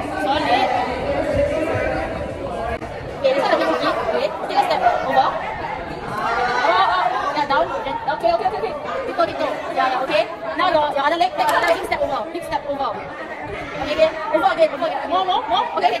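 Several young people's voices talking over one another: overlapping chatter with no single clear speaker.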